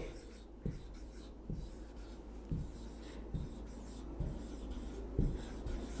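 Marker pen writing on a whiteboard: faint strokes with a soft tap about once a second as the letters are formed.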